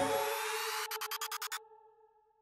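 Electronic background music: the bass drops out, leaving a held synth chord that breaks into a quick stutter of about eight pulses, then cuts off suddenly to near silence.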